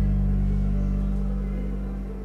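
Instrumental karaoke backing track of a slow ballad between sung lines: a sustained low chord held and slowly fading.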